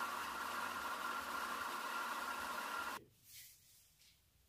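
Steady hiss of room tone with a faint steady whine, the background of a voice-over recording, cutting off about three seconds in to near silence.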